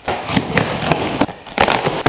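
Packing tape on a cardboard box being slit open along the seam with a blade: a continuous crackling rip with irregular sharp snaps, dipping briefly about one and a half seconds in.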